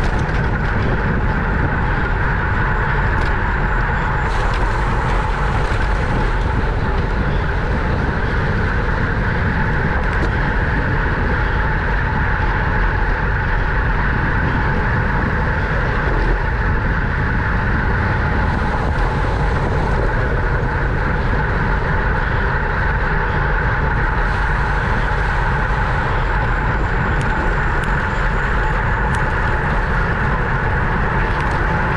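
Steady wind rushing over the microphone of a camera mounted on a racing bicycle moving at about 23 to 29 mph, mixed with tyre noise on the road.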